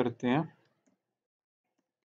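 A man's voice finishing a word in the first half second, then near silence with a few faint computer-keyboard keystrokes.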